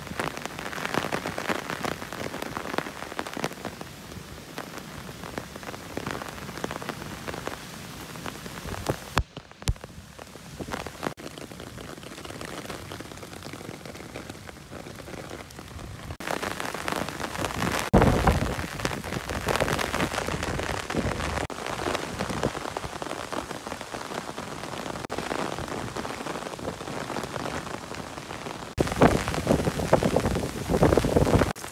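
Rain pattering steadily on leaves and the ground, a dense crackle of drops, with heavy gusts of wind buffeting the microphone about eighteen seconds in and again near the end.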